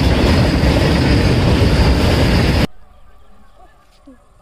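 Freight train of tank wagons rolling past close by: a loud, steady rushing rumble of wheels on rails that cuts off suddenly a little over halfway through, leaving only faint background sound.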